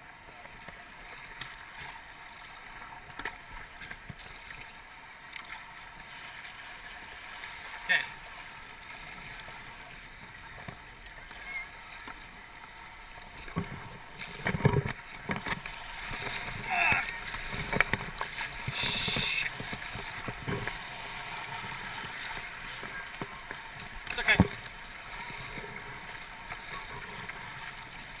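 Steady flowing noise of river rapids around a kayak, with the kayak paddles splashing in the water now and then; the loudest splashes come about halfway through.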